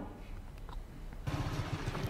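Motorbike engine running, cutting in suddenly a little over a second in as a steady noise with a low rumble.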